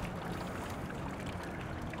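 Low, steady outdoor background noise with no distinct events: an even hiss, without any water visibly splashing from the fountain.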